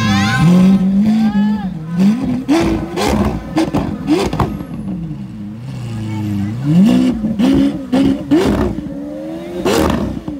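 Lamborghini Aventador's naturally aspirated V12 being blipped over and over at a standstill, each rev climbing and dropping back, with sharp exhaust pops and crackles on the overrun as it spits flames. Crowd voices underneath.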